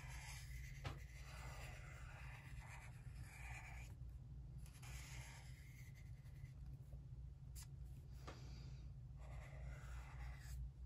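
Faint scratching of a felt-tip marker drawing lines on sketchbook paper, in stroke after stroke with short breaks, the longest from about seven to nine seconds in. A single sharp click about a second in.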